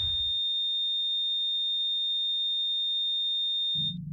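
A steady, high-pitched electronic tone, the held tail of a logo intro sound effect, cut off sharply near the end as a low drone comes in.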